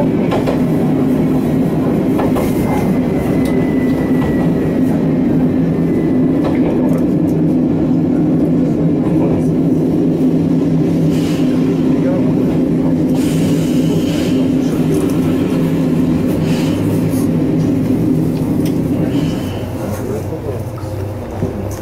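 Inside a Kanto Railway Joso Line diesel railcar, the engine drones steadily as the train runs into a station and slows to a stop. A faint squeal glides downward a couple of seconds in, a few short squeaks come later, and the drone drops just before the end as the train halts.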